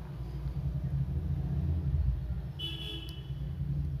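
Steady low background rumble, with a short high-pitched horn-like toot lasting about half a second, a little under three seconds in.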